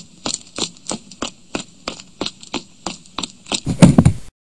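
Footstep sound effect: even knocks about three a second, ending in a louder, heavier hit near the end.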